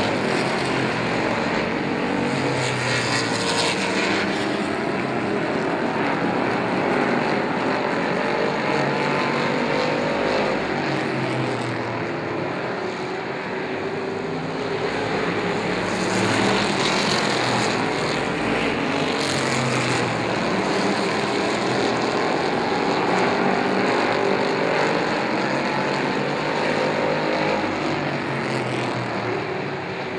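Street stock race cars' engines running at race speed on a short oval, several engines overlapping and rising and falling in pitch as the cars pass.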